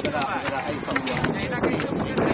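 Several people talking over one another, with short clicks and a steady background noise underneath.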